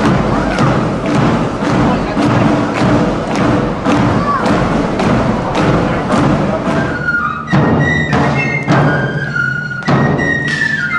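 Marching band music with a steady drum beat about twice a second. About seven seconds in it changes to a fife-and-drum corps, with high fifes playing a melody over rope-tension side drums.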